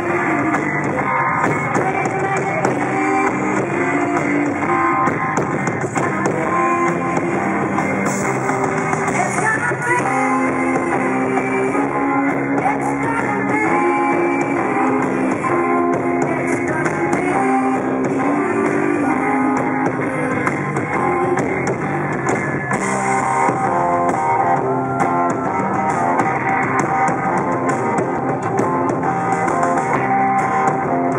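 A live band playing a song with guitar and drum kit, recorded from the audience.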